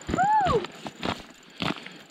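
A short, high vocal whoop that rises and then falls in pitch, an excited cry as a lake trout is hooked, followed by a few faint clicks.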